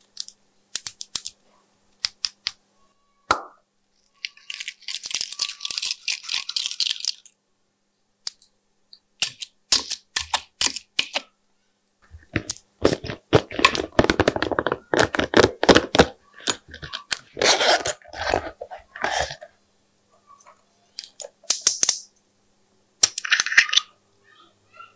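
Small glitter and sprinkle containers being handled over trays of slime: many short clicks and taps of caps, corks and lids, with two longer passages of shaking and pouring, a hissy one about four seconds in and a fuller rattling one about thirteen seconds in.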